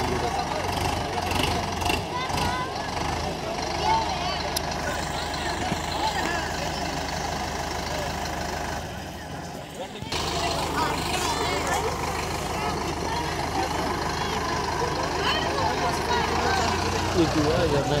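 Sonalika Tiger tractor's diesel engine running steadily, with a crowd of people talking over it.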